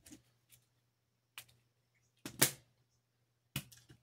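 A few sharp plastic clicks and taps from a small clear plastic pearl storage case being handled on a wooden table, the loudest about halfway through.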